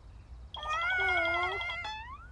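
Cartoon ant character's wordless, whiny vocal sound, wavering slightly in pitch, lasting about a second from roughly half a second in.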